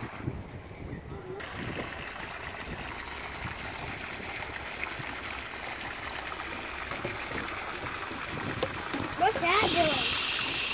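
Steady outdoor background noise over the water, with a brief high-pitched voice near the end.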